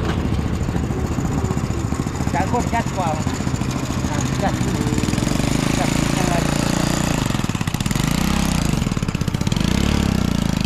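Small motorcycle engine running at idle with a fast, even beat. Its loudness rises slightly just before the end as the bike moves off.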